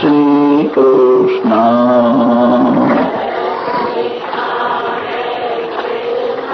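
Devotional Hindu chanting: a man's voice sings long held notes for about three seconds, then a softer, blurred chorus of many voices carries on.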